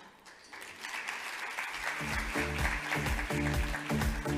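Audience applause starting about half a second in, joined about two seconds in by a music track with a steady pulsing bass beat.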